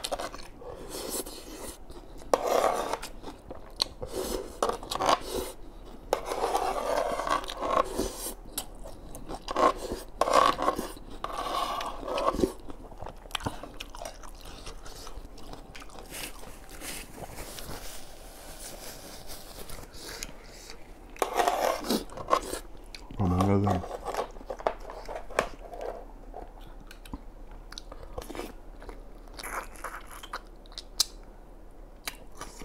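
Close-miked eating sounds: slurping and chewing spicy instant noodles, with wet mouth noises and small clicks, busiest in the first dozen seconds and sparser after.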